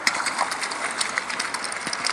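A rapid, irregular run of sharp clicks and crackles over a steady hiss of running water.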